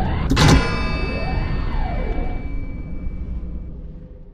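Animated logo intro soundtrack: a sudden hit about half a second in, followed by a ringing tone that fades away over a few seconds. Swooping whooshes rise and fall over a low rumble, and the whole thing fades out near the end.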